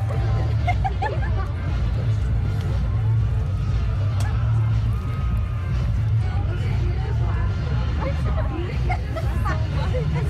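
Spectator crowd babble, with many voices talking at once and scattered snatches of nearby speech over a steady low rumble.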